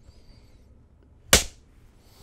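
Film clapperboard snapped shut once: a single sharp clack a little past halfway through, the slate clap that marks the start of a take.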